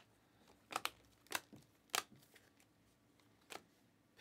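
Glossy Panini Optic basketball cards being flipped through by hand, each card slipping off the stack with a short, sharp snap. There are three snaps about half a second apart starting about a second in, and one more near the end.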